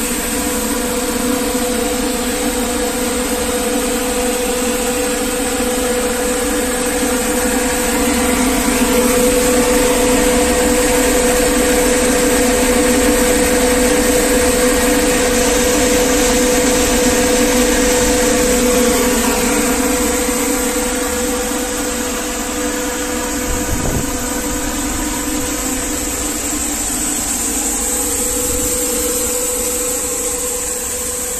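5XZC mung bean cleaning machine running: its electric motors, fan and vibrating screen give a steady mechanical hum with a constant whine through it, a little louder from about eight to nineteen seconds in. A single short knock comes near the end.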